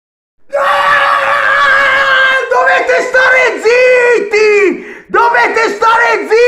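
A man yelling at full voice close to the microphone: one long held shout, then a run of short shouted syllables, each dropping in pitch at its end.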